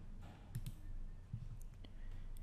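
A few faint computer mouse clicks, a quick pair about half a second in and more later, as windows are switched from the taskbar.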